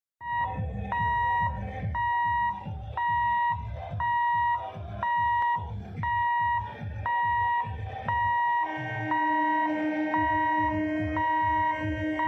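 Level-crossing warning hooter beeping in a high electronic tone about once a second, the signal that the gate is closed for an approaching train. About nine seconds in, a steady lower tone joins it and holds.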